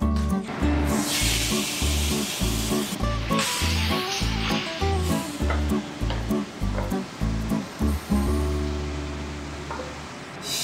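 Background music with a steady bass beat, over food sizzling in oil in a hot frying pan; the sizzle is loudest from about one second in until about five seconds in.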